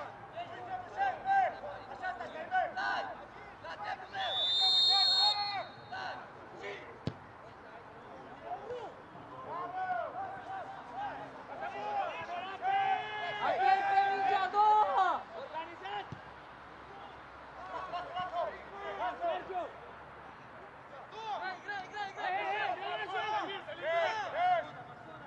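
Players and coaches shouting on an outdoor football pitch, with thuds of the ball being kicked. A short, high whistle blast comes about four seconds in.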